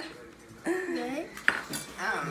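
Spoons and clear plastic cups clinking and knocking as fruit is spooned into the cups, with one sharp knock about one and a half seconds in.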